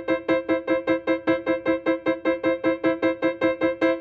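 Piano playing the same staccato sixth, E and C above middle C, repeated evenly about six times a second with a wrist-bounce motion. It is being pushed toward a speed where sustaining the bounce takes muscular effort.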